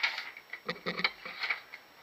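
Freshly sharpened knife slicing through a held sheet of notebook paper: a quick series of short rustling cuts.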